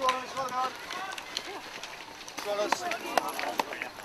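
Runners' footsteps on a grassy hill path as a group goes by, with background voices faint in the background.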